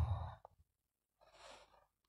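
A man's speaking voice trails off, then near silence broken by one short, faint breath about one and a half seconds in: the speaker drawing breath in a pause.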